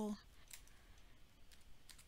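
Faint computer keyboard typing: a quick, irregular run of light key clicks as a word is typed in.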